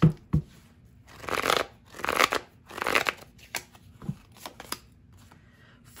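A deck of tarot cards shuffled by hand: two sharp taps at the start, three bursts of cards sliding against each other about a second apart, then a few light clicks of cards.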